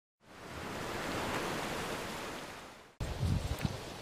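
A smooth rush of noise swells up and fades away over about two and a half seconds. After a moment of silence it cuts sharply to outdoor sound: a low rumble of wind on the microphone with a few low thumps.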